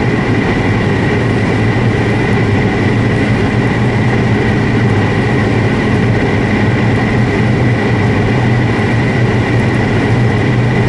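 Inside the cabin of a turbocharged Audi sports compact at full throttle near top speed in sixth gear: the engine drones steadily at high revs, with heavy wind and tyre noise.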